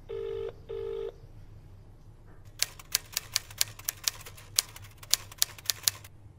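A telephone ringing tone gives two short steady beeps in quick succession. About two and a half seconds in, typewriter keys start clattering in an uneven run of about fifteen sharp strikes.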